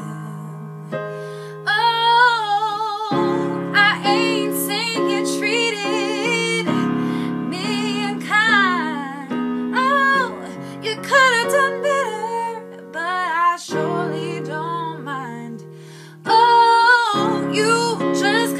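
A woman sings long, wavering notes with heavy vibrato and runs over piano chords played on an electric keyboard. The piano plays alone for the first couple of seconds before the voice comes in.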